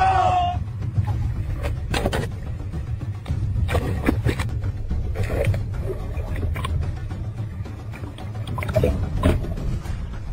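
A steady low rumble, with a few sharp splashes or knocks about two and four seconds in, as a hooked giant grouper thrashes at the surface beside the boat.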